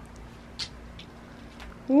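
A few faint clicks as buttons on a small LED-light remote control are pressed, against a low room background. Right at the end a woman says a rising "wow".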